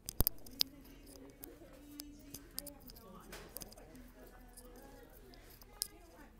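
Phone handling noise: a few sharp knocks near the start, then rustling as the phone rubs against a fleece jacket, over a faint murmur of voices.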